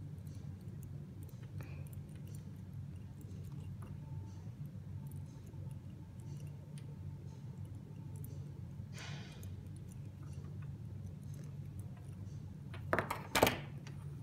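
Low steady hum with faint handling sounds while heat shrink is pressed down with a pen-style heat tool. About nine seconds in there is a short hiss, and a second before the end come two sharp knocks as the tool is set down on the table.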